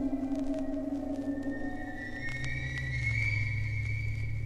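Instrumental music played from a vinyl record on a turntable: long held tones, a lower one giving way about two seconds in to a higher tone over a deep bass note, with light clicks of record surface noise.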